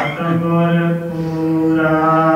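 A man chanting Sikh scripture (Gurbani) in a melodic recitation, holding one long steady note after a brief break near the start.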